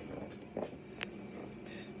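Quiet room tone with a soft thump about half a second in and a short, sharp click about a second in.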